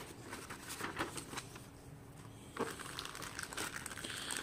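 Faint crinkling and rustling of a paper manual and a plastic-wrapped booklet being handled, in scattered small bursts.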